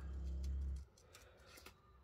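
A low steady hum for under a second, then a few faint clicks of small spring-loaded craft scissors snipping around a stamped paper image.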